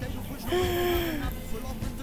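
Background music with a steady low bed. About half a second in, a voice holds one slowly falling note for about a second.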